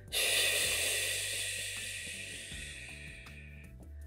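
A long breath out through the mouth, a hissing sigh that starts suddenly and fades away over about three and a half seconds, over soft background music.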